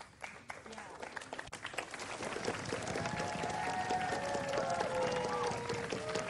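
Studio audience applause, a few scattered claps at first that swell into fuller clapping about two seconds in, with long held notes sounding over it.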